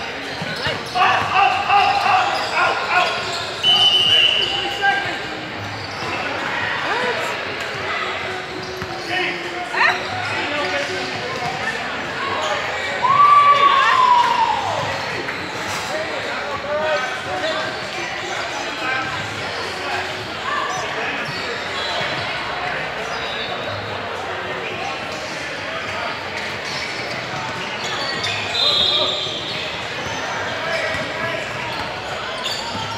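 A basketball bouncing on a hardwood gym floor during play, with indistinct players' and spectators' voices and calls echoing around a large hall. There are a few short high squeaks and a louder falling shout around the middle.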